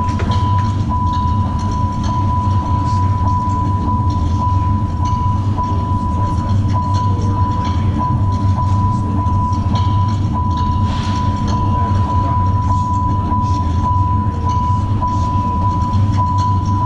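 Loud, steady low rumble with a constant high-pitched tone held over it and faint scattered clicks, a sustained sound-effect passage of the guard show's soundtrack played through the gym's speakers.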